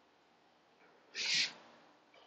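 A single short, soft hiss about a second in, with no pitch to it, against near quiet.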